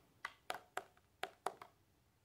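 Faint, sharp clicks and ticks of a plastic clamshell wax melt pack being handled in the fingers, about six or seven of them in under two seconds, then stopping.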